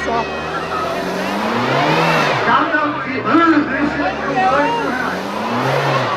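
Honda Civic engine revving up and down over and over while its tyres spin in a smoky burnout, with people shouting over it.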